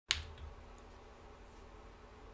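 A single sharp click just as the sound begins, dying away within about half a second, followed by a faint low hum.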